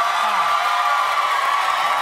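Studio audience cheering and applauding in a steady roar, with a short whoop or two.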